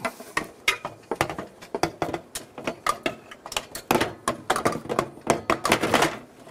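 Aluminium scaffold platform being set onto a rung, with many irregular knocks and rattles as its frame and hooks strike the aluminium tubes.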